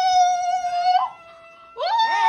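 A high voice singing a long, steady held note that breaks off about a second in. A faint tone lingers, and a second held note begins near the end.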